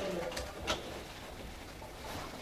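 A pause in speech in a meeting room: low room noise with a couple of faint sharp clicks in the first second, after the last word of a woman's speech dies away.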